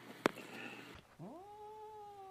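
A domestic cat's long, drawn-out meow: it rises quickly a little past a second in, then holds one steady pitch that sags slightly. Near the start, before the call, there is a single sharp click.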